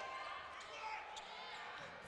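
Faint live sound of a basketball game in play: low arena crowd murmur and court noise from players scrambling under the basket, with a few thin faint squeaks.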